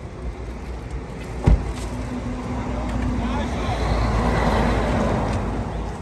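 A road vehicle passing close by, its noise swelling to a peak and fading over about three seconds, over a low traffic rumble. A single sharp thump comes about a second and a half in.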